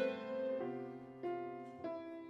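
Clarinet playing a slow melody over an accompaniment, moving to a new note about every 0.6 s.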